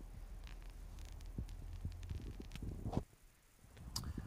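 Faint steady low hum with a few light scattered clicks. It drops away about three seconds in, and a single click follows just before the end.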